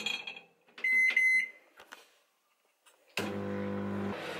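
Microwave oven: a keypad beep about a second in, then the oven switching on near the end and running with a steady low hum.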